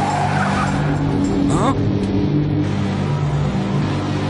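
Animated race-car sound effects: car engines running at speed under a steady low drone, with a short rising whine about a second and a half in.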